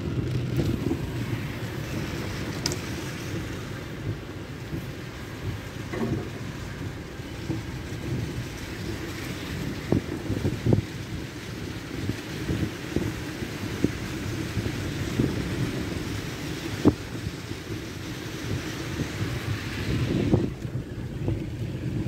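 Storm wind blowing hard, rumbling and buffeting on the microphone, with a few sharp knocks scattered through, the loudest about two thirds of the way in.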